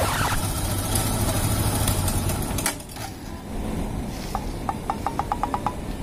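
A motorcycle engine running steadily, then switched off nearly three seconds in. Near the end comes a quick run of short, evenly spaced high beeps.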